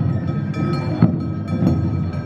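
Awa odori parade music: a street band of drums and a clanging metal hand gong beating out repeated strokes, with steady high pitched tones held over them.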